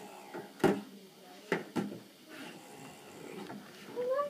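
Plastic baby bathtub knocking against a tabletop as it is tipped and lifted: one sharp knock about half a second in, then two quicker knocks near the middle.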